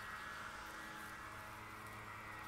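Faint steady outdoor background noise, an even hiss with a low steady hum under it, and no distinct events.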